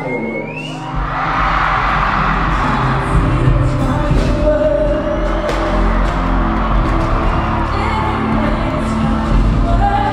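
Live concert sound: music with heavy bass and singing over a loud crowd that cheers and screams, swelling about a second in. Sharp hits are scattered through it.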